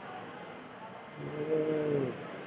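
Quiet room tone, then a little over a second in a man's voice holds one steady wordless note, a drawn-out hesitation sound, for most of a second.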